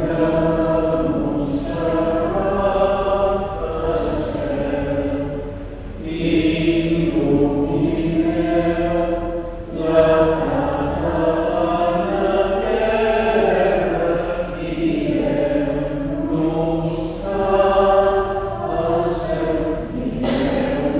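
Choir singing a slow sacred chant, in long sustained phrases with brief pauses between them.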